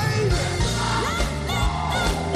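Music with singing over a steady beat.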